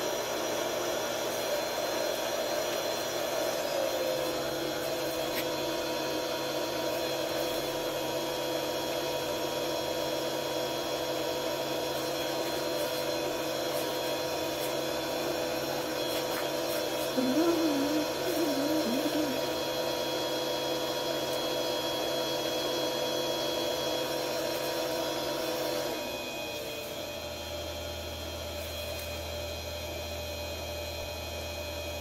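A Grizzly mini lathe's motor runs steadily with a whine made of several steady tones, spinning a brass ring on a mandrel. Its tone shifts about four seconds in, and near the end it gets quieter and the pitch changes. A brief wavering sound rises over it a little past the middle.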